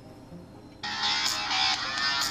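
Music starting suddenly about a second in, played through the Nokia X3-02 phone's built-in loudspeaker: a thin sound with little bass.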